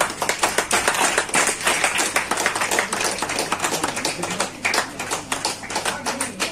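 Applause: many people clapping, a dense, continuous patter of hand claps.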